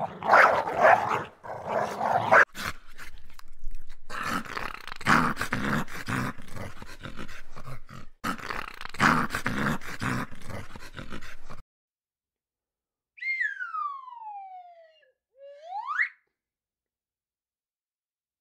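Dachshund puppies growling and yipping in play while mouthing at a person's foot. After a pause near the end, a clean whistle-like tone glides down and then swoops back up.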